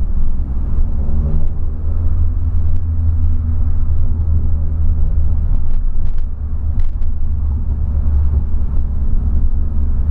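Cabin noise of a 2008 Volkswagen Polo sedan being driven, heard from inside the car: a steady, loud low rumble of engine and road.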